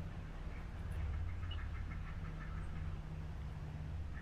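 Ducks quacking faintly a few times over a steady low outdoor hum.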